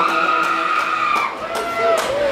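Electric guitar effects noise, with no playing: a high whining tone glides up at the start, holds, and drops away after about a second, then a shorter rising-and-falling whine follows near the end.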